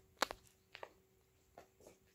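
Several short knocks and scuffs right at the microphone as a cat brushes its body and fur against the phone, the loudest pair about a quarter second in and a few softer ones later.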